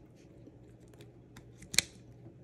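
Plastic beach-chair drink holder being handled and worked: a scatter of faint small plastic clicks, then one sharp click near the end as its mechanism snaps into place, the holder locking again now the sand is flushed out.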